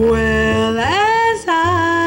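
A woman jazz vocalist sings a slow tune with the quartet behind her. She holds a note, slides up to a higher sustained note about a second in, then moves to a note sung with vibrato.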